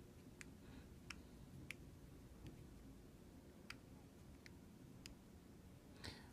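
Near silence: room tone with about seven faint, sharp clicks scattered irregularly through it.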